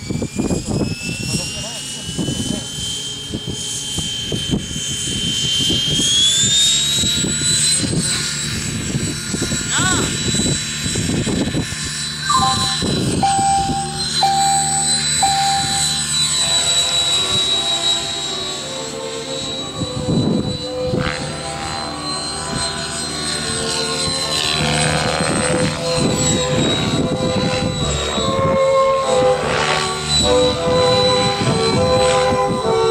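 Radio-controlled model helicopter spooling up and flying: its rotor whine rises in pitch over the first few seconds, steps up again about six seconds in, then holds steady as it lifts off and flies overhead. Three short beeps come in about halfway through.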